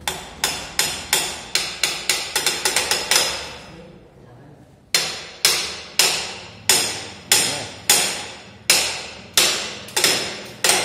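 Repeated sharp, ringing knocks, like hammer blows: a quick run of about a dozen in the first three seconds, then a pause, then slower evenly spaced knocks about every two-thirds of a second.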